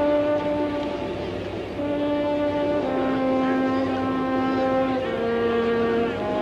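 Drum corps bugle solo playing slow, long held notes that step downward in pitch, with a short break about a second in.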